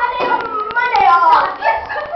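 Girls' high-pitched voices, squealing and shouting over one another, with a few small clicks.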